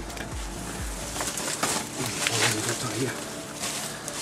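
Dry twigs and brushwood rustling and crackling as branches are pushed aside by hand, with low mumbled voices.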